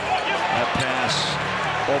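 A basketball being dribbled on a hardwood court over steady arena crowd noise.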